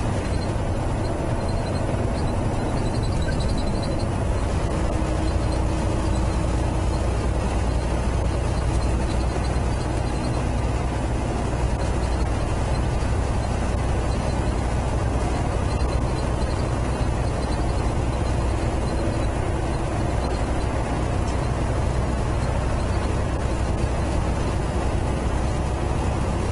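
Semi-truck engine and tyres running steadily at cruising speed, heard from inside the cab as an even, low-pitched rumble of engine and road noise.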